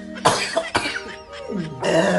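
A man coughs twice, in two short harsh bursts, then lets out a voiced sound that slides down in pitch, over background music.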